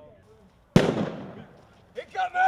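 A single sharp bang about three-quarters of a second in, ringing out and fading over about a second.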